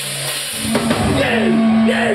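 Live rock band with electric guitars and a drum kit in a small room: after a brief quieter moment, the full band comes in about half a second in, with sustained low guitar notes and drum and cymbal hits.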